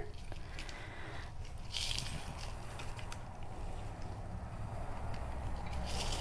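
Quiet handling sounds: faint small taps and rustles from a plastic ornament and its cardboard tag being handled, over a steady low hum.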